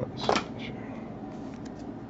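Trading card being handled: one short, loud swish about a quarter second in, then a few faint ticks and clicks over a low steady hum.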